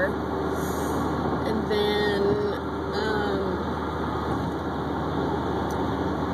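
Steady road and engine noise inside a moving car's cabin, with a woman's voice coming in briefly about two to three seconds in.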